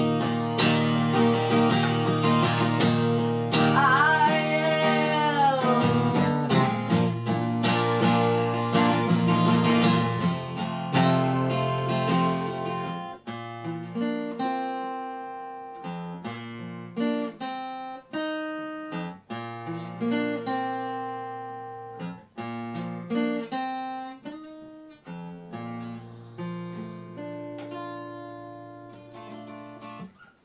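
Acoustic guitar strummed hard, with a voice holding a sliding sung note about four seconds in. After about thirteen seconds the playing thins to slower picked notes and chords that fade toward the end, closing the song on a major seventh chord.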